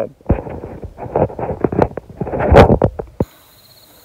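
A man's breathy laughter, with handling clicks close to the microphone, for about three seconds. Then an abrupt cut to a quiet, steady chorus of crickets chirring in night grass.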